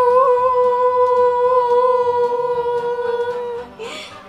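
A person's voice holding one long, steady note at a single pitch, which stops about three and a half seconds in.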